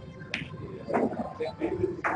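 A single sharp click of a snooker ball about a third of a second in, as the cue ball travels across the table after a shot.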